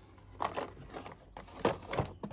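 Stiff plastic blister packaging of a socket set crinkling and clicking in the hand as it is picked up, in a string of short rustles.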